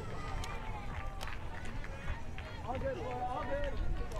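Field ambience of a beach ultimate game: faint, distant players calling and shouting to each other over a low steady rumble, with two sharp clicks about half a second and a second in.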